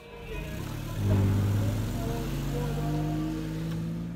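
Vehicle engine running, louder from about a second in and slowly rising in pitch as it revs up, likely the pickup truck in the scene starting to pull away.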